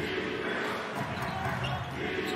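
Basketball being dribbled on a hardwood court, over steady arena background noise.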